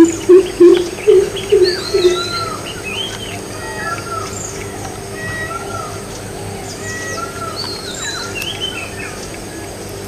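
Greater coucals giving their deep, resonant hooting call in a quick series of about six hoots that ends about two seconds in, with other birds chirping and whistling throughout.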